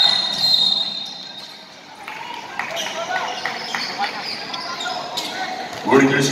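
A referee's whistle sounds one steady blast of about a second and a half to call a foul, followed by voices and crowd chatter in a large gym.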